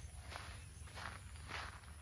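Three soft footsteps on a wet, muddy dirt track, about half a second apart, over a low steady hum.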